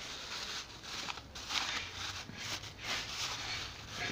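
Black plastic bag rustling irregularly as it is handled and opened by hand.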